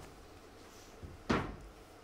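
A faint click followed by one sharp knock or bump about a second and a half in, over low room noise.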